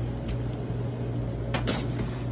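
Steady low hum of commercial kitchen equipment, with a few short clicks about a second and a half in.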